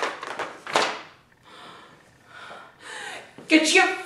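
A woman breathing hard in sharp gasps, then fainter breaths, and a short voiced sound near the end.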